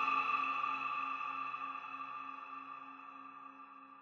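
Closing of a dark electronic dubstep track: a held, ringing chord of several steady tones with no beat, fading out steadily until it is nearly gone; the lowest note drops out shortly before the end.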